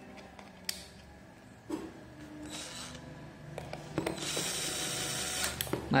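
Small cordless electric screwdriver running for about a second and a half, near the end, driving a screw into the plastic battery cover of a digital multimeter, after a few light clicks of handling.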